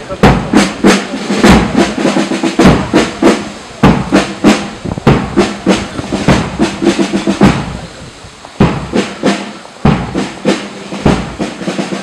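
Marching band's snare and bass drums beating a steady march cadence, about three strokes a second, briefly softer about eight seconds in.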